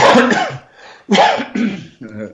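A man coughing twice, about a second apart; the coughs are louder than the talk around them.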